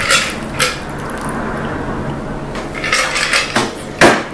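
Glass and metal clinks of a bar strainer against a glass mixing glass while a stirred cocktail is strained into a cocktail glass and the tools are set down on the bar: two clinks near the start and a cluster of them about three seconds in.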